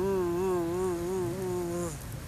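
A single held musical note with a wavering vibrato, lasting about two seconds and cutting off just before the end.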